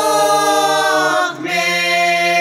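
Male voices singing a traditional Macedonian folk song in long held notes over a steady low drone. The upper note slides gently down, breaks off briefly, and a new sustained note begins about one and a half seconds in, with the drone stepping up a little.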